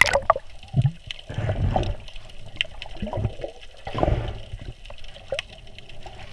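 Water sloshing and gurgling, heard from just under the surface, with bubbles. A sharp click comes at the start, and the sound swells louder twice, about two seconds apart.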